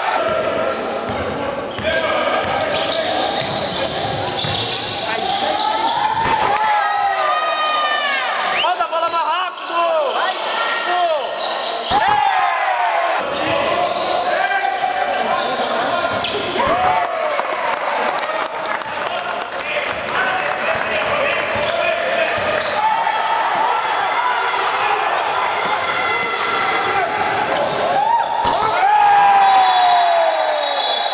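Live game sound of indoor basketball: a ball bouncing on the wooden court and sneakers squeaking in short rising-and-falling chirps, heard over the echoing noise of voices in a gym.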